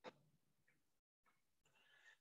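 Near silence, with one faint short click right at the start.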